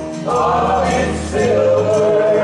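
A small gospel choir of men and women singing a hymn in harmony through microphones, with musical accompaniment; the voices pause briefly just after the start, then come back in on the next phrase.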